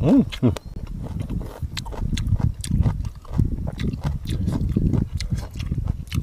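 A short close-miked "mmm" of relish at the start, then wet chewing and lip-smacking of food with many small clicks, heard close through a clip-on microphone.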